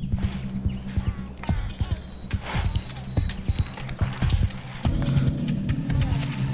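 Film soundtrack: a sustained low music chord that swells about five seconds in, with a fast, irregular run of knocking steps over it throughout, like hooves or feet moving quickly over ground.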